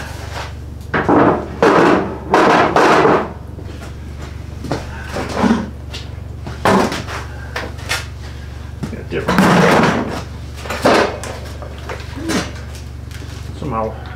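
Objects being handled, shifted and set down: a series of knocks, clatter and scrapes, the loudest about nine and a half seconds in, over a steady low hum.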